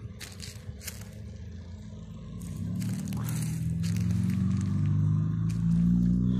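Footsteps scraping and crunching on gravelly dirt, then from about halfway a low drone that slowly rises in pitch and grows louder, becoming the loudest sound near the end.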